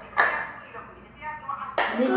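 A woman speaking in short snatches, with a sharp click just after the start and another near the end.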